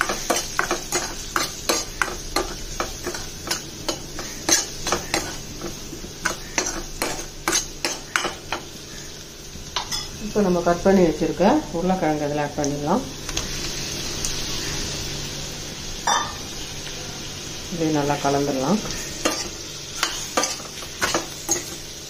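Metal spoon stirring and scraping onions and spices in a stainless-steel kadai, with quick repeated clinks against the pan over the sizzle of frying in oil.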